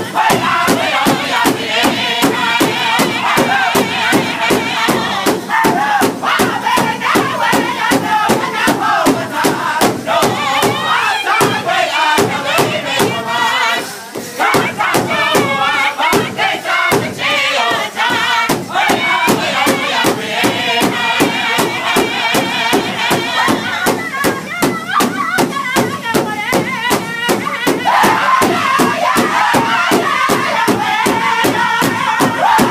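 Powwow drum group singing an intertribal song in loud, high, strained voices while beating a single large drum together in a steady pulse of about two to three strokes a second. There is a short lull about halfway before the full drum and voices return.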